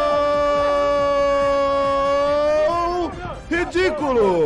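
A voice holding one long sung or wailed note for close to three seconds, sagging slightly in pitch, then breaking into short warbling sounds near the end.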